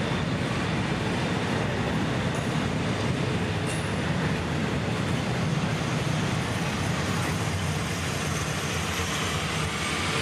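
The last double-stack intermodal well cars of a freight train rolling past, with a steady rumble and rush of steel wheels on rail.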